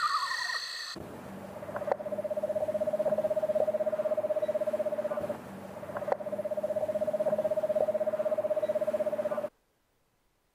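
Eastern screech owl calling: the tail of a falling whinny, then two long, even trills held on one pitch, each about four seconds, with a short break between them.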